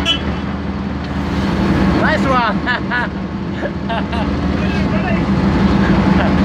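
Vehicle engines running steadily in slow street traffic, a low, even drone. There are voices around two to three seconds in and a short high beep at the very start.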